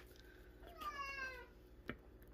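A house cat meowing once: a single drawn-out meow, about a second long, that falls slightly in pitch.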